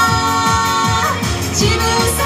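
A woman singing a Japanese pop song live into a handheld microphone over pop accompaniment with a steady beat of about four bass thumps a second. She holds one long note for about the first second, then moves on to the next phrase.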